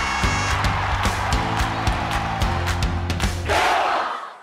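Loud outro music with a steady driving beat and sustained bass notes, rising into a rushing swell near the end.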